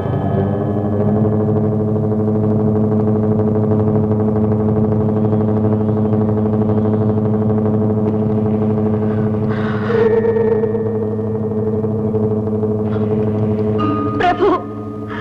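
A steady, low soundtrack drone of several held tones, with a wavering higher tone joining about ten seconds in.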